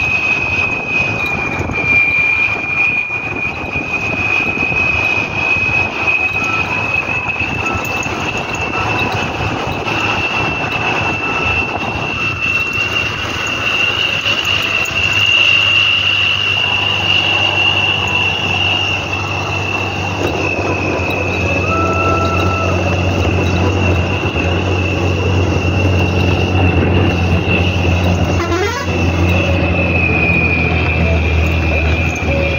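A moving bus running along the road: engine hum and road noise, with a steady high-pitched whistle over it throughout. The low engine hum grows stronger in the second half.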